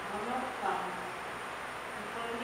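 A woman's voice singing a slow hymn in long held notes, fading out a little after a second in.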